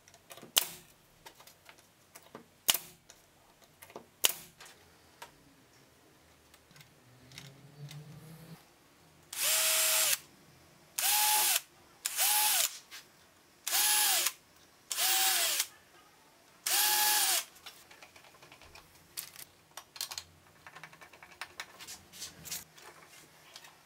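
An air nailer firing three sharp shots a couple of seconds apart, then a cordless drill running in six short bursts, each speeding up and winding down, drilling pilot holes for hinge screws in a spruce box.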